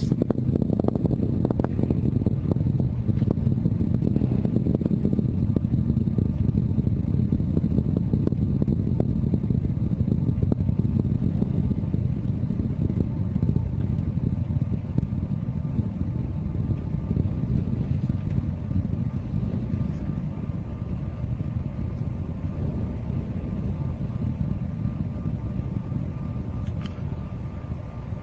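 Delta IV Heavy's three RS-68 engines in ascent: a steady low rumble that slowly fades as the rocket climbs away.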